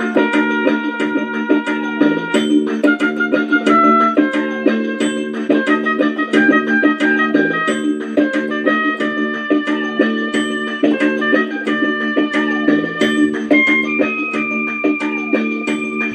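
Yamaha portable electronic keyboard playing a song melody in short single notes over a held low chord and an even drum-machine beat.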